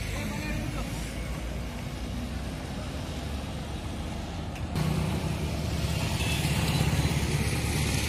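Street noise with motor vehicle engines running. About halfway through the sound changes suddenly and a louder engine runs close by, steady and low with a fine regular pulse.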